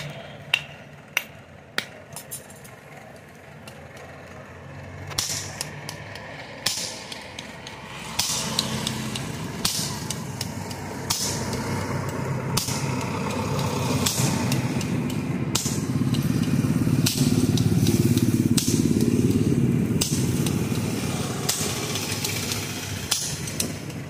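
Hand hammer striking a hot axe head on a small anvil: three sharp ringing strikes in the first two seconds, then scattered lighter blows. Under them a motor vehicle engine runs close by, growing louder from about eight seconds in and fading near the end.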